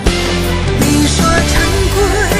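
Chinese pop duet love song: a full band backing with a steady beat and a man singing a line, with a woman's voice taking up the next line near the end.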